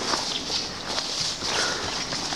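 Footsteps through dense undergrowth, with leaves and twigs brushing and rustling against the walker.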